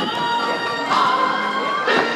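Recorded music played over a stage loudspeaker, with long held notes; a new phrase starts sharply near the start and again near the end.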